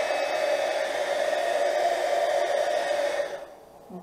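Embossing heat gun blowing steadily as it melts thick embossing powder on a puzzle piece. It stops about three and a half seconds in.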